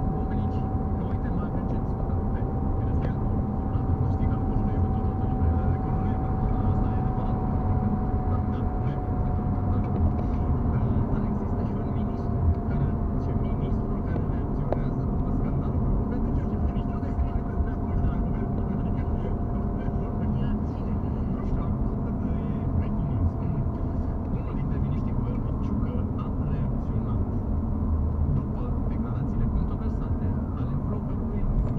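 Moving car heard from inside the cabin: a steady low rumble of tyres and engine on the road, with a faint whine that sinks slowly in pitch and fades out a little over twenty seconds in.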